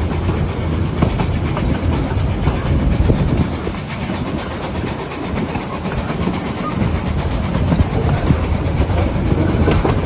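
Small narrow-gauge steam train heard from one of its open-sided passenger carriages: a steady rumble and clatter of wheels over the rails runs on, easing a little midway and growing louder near the end.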